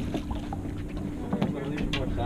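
Steady low hum and rumble of a fishing boat's engine running, with a few light clicks.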